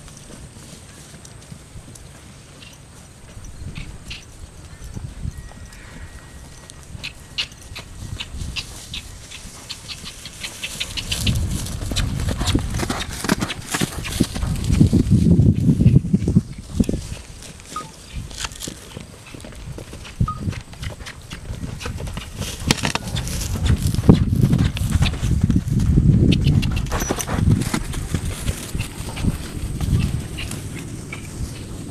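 Young Quarter Horse filly moving through tall grass, her hoofbeats thudding with grass rustling. The sound grows louder and deeper in two stretches, one around the middle and one late on.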